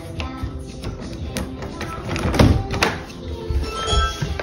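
Background music plays throughout; a little past halfway, several sharp clicks and a thump come from a deadbolt being turned and a wooden front door being pulled open.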